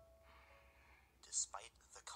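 A person whispering, starting about a second in, with sharp hissing consonants.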